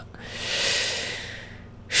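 A man's long breath blown out through the mouth, swelling and then fading over about a second and a half: a sigh of disbelief.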